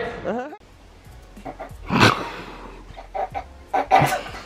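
A live band's music ends in the first half-second with a falling then rising pitch glide. A quieter stretch follows, with one short, sharp vocal sound about two seconds in and a few brief vocal sounds near the end.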